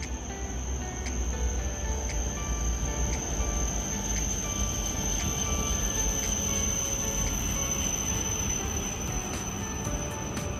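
Background music: a simple melody of held notes with a light tick about once a second. A low rumble from a Shinkansen train rolling slowly into the platform runs faintly underneath.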